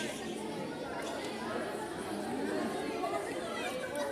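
Indistinct chatter of many spectators' voices in a large hall, at a steady moderate level, with a few faint sharp clicks.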